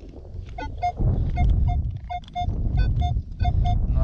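Minelab X-Terra Pro metal detector sounding about ten short, identical mid-pitched beeps, mostly in quick pairs, as its coil is swept back and forth over a buried target. The target reads about 50 on the detector's ID scale.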